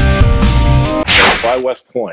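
Rock background music with guitar and drums that stops about halfway, followed by a loud whoosh transition effect that fades away, then a man's voice beginning.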